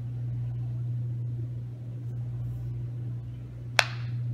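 A steady low hum over faint room noise, with one sharp click near the end.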